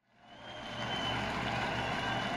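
Silence, then a steady rumbling background ambience fades in over about half a second and holds, with a faint high tone and a low hum under it.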